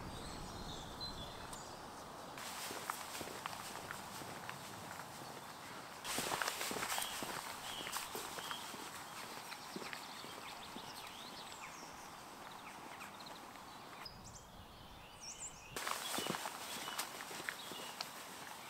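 Footsteps of a man walking in boots along a stone path and across grass, with small birds chirping. The background changes abruptly a few times as one shot gives way to the next.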